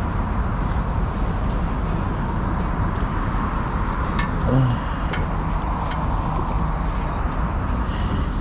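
Steady low rumble of outdoor background noise, like traffic or wind on the microphone, with a few small handling clicks and a brief vocal sound about four and a half seconds in.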